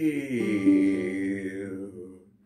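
A man's baritone singing voice holding out the last word of the line 'and you land in jail', sliding down in pitch just after the start, holding a lower note and then fading away near the end.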